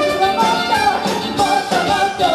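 Live band playing a funk song, with women singing lead over drums and percussion.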